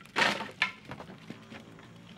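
Split firewood being knocked and dropped onto a woodpile: a loud wooden clatter just after the start, a second knock about half a second later, then a couple of lighter taps.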